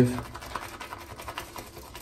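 Semogue Owners Club Taj boar-bristle shaving brush whipping soap lather in a wooden bowl: a fast, continuous run of soft scratchy clicks.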